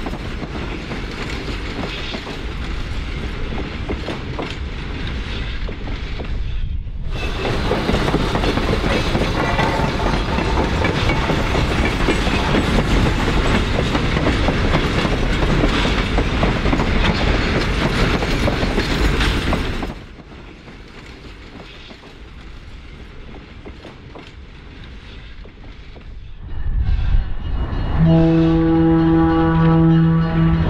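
Loaded ore train rolling past, with wheel clatter on the rails. The sound drops out briefly about a quarter of the way in and goes quieter for a few seconds two-thirds of the way through. Near the end a diesel locomotive's air horn sounds one steady chord.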